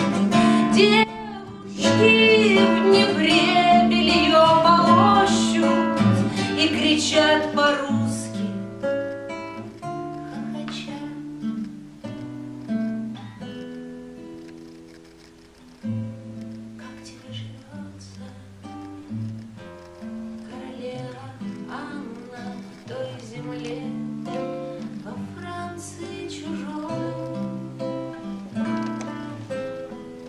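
A woman singing a bard song to her own acoustic guitar; after about eight seconds the voice stops and the guitar goes on alone, picked more quietly.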